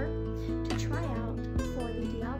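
Background music of strummed acoustic guitar chords, held and changing about every second, under a woman's voice.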